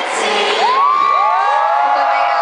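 Concert crowd cheering and screaming as the song ends. About half a second in, many high voices rise in pitch and hold long overlapping screams.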